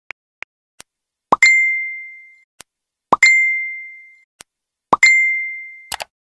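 Chat-app message alert sounds, three times: each a quick rising pop followed by a ringing ding that fades over about a second. A few short clicks fall between them.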